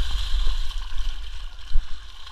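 Muddy water sloshing and gurgling as runners wade through a mud pit, over a fluctuating low rumble.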